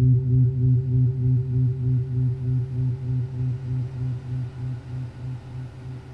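Low electronic drone from a tabletop noise rig of cable-patched synth and effects units, throbbing about four times a second. It fades out steadily as the piece ends.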